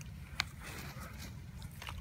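Faint rustle and scrape of a gloved hand working loose dry soil, with one sharp click just under half a second in.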